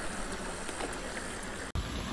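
Steady rushing hiss of a small creek's flowing water, cut off abruptly near the end by a sudden change to a duller background.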